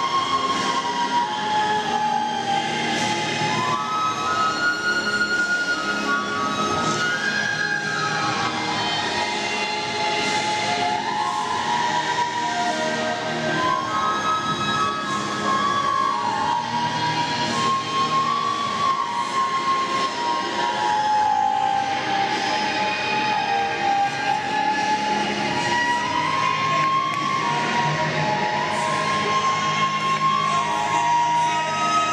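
Silver transverse flute playing a slow melody of long held notes over a fuller backing accompaniment.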